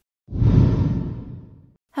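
A single whoosh transition sound effect between news items, starting suddenly about a quarter of a second in and fading away over about a second and a half.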